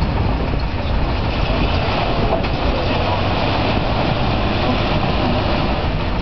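Off-road vehicle engines running steadily, with a continuous low rumble and rushing noise as the vehicles work in a flooded mud pit.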